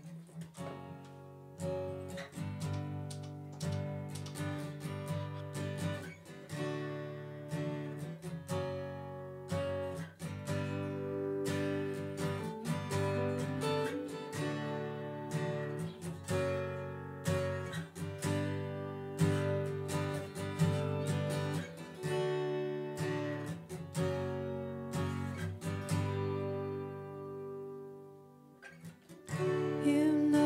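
Acoustic guitar strummed in steady chords with an electric guitar alongside, playing the instrumental intro of a soft folk song. The playing thins out briefly near the end.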